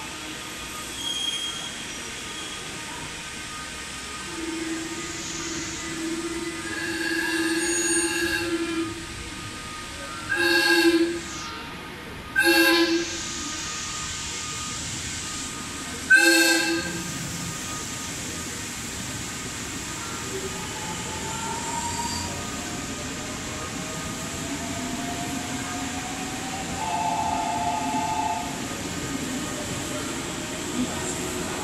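JR Central 383 series electric train's horn: one long blast, then three short blasts a couple of seconds apart, four in all. The train then runs through the platform without stopping.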